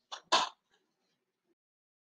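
A person clearing their throat: two quick, loud bursts close together near the start.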